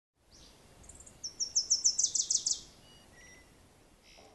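A small bird singing a fast run of high chirps, about seven a second and growing louder, followed by a few faint notes near the end.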